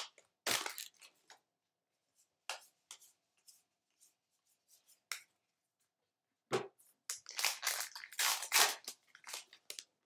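Baseball card pack opening: the torn pack wrapper rustling, then the cards shuffled and squared up in the hands, with scattered sharp rustles, one thump about six and a half seconds in, and a dense run of rustling for a couple of seconds near the end.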